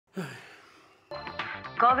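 A man sighs, a breathy sigh falling in pitch and fading out. About a second in, television sound starts: music, and near the end a voice saying "Covid".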